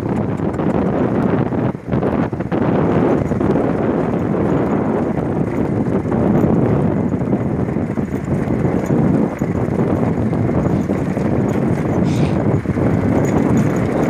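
A vehicle travelling over a rough dirt mountain road: steady, loud road and running noise, briefly dipping about two seconds in.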